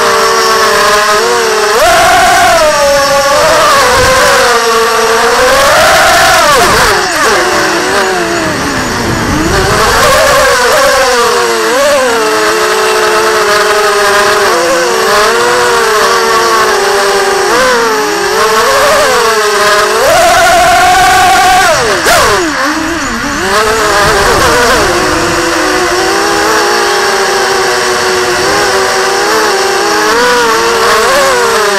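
Electric motors and propellers of a ZMR 250 racing quadcopter heard from its on-board camera: a loud whine that keeps swooping up and down in pitch as the throttle changes, held higher for a couple of seconds about twenty seconds in. The quad is on a test flight with its PID tuning way off.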